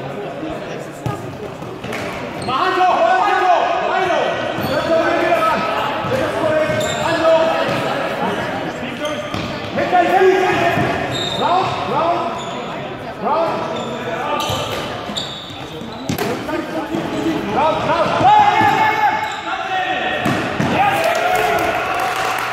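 Players calling and shouting to each other, several voices overlapping and echoing in a large sports hall, over the thuds and squeaks of players' shoes on the hall floor.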